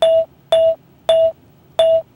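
Four short electronic chime tones, all at the same pitch and spaced roughly half a second or more apart. It is a rating sound effect, one chime for each eye icon that closes in a wink tally.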